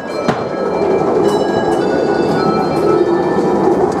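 Ghost-train ride car rolling along its track with a loud, steady rumble that builds over the first second, with a sharp knock about a third of a second in.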